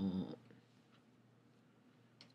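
A man's drawn-out hesitation sound trailing off in the first moment, then near silence with a faint steady low hum of room tone.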